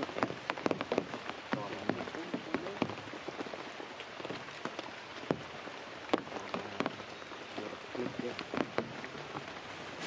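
Steady rain falling on wet rocks and leaves, with many separate drops ticking sharply close by.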